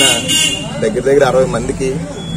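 A man speaking in Telugu, with a brief steady horn-like toot in the background near the start.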